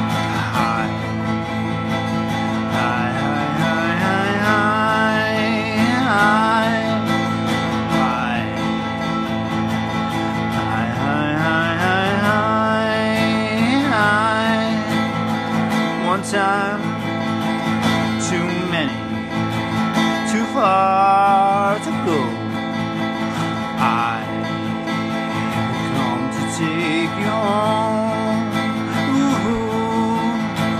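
Music: acoustic guitar strumming steadily, with a wordless melodic line over it that slides and wavers in pitch.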